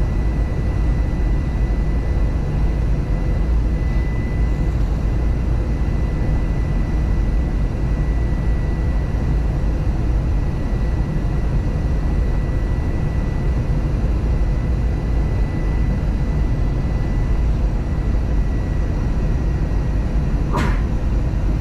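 Steady cabin noise inside an Airbus A321 airliner descending on approach: a deep, even rumble of airflow and engines, with a faint steady high whine over it.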